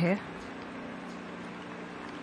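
Steady outdoor background noise on a golf course: an even hiss with a faint, constant low hum and no distinct events.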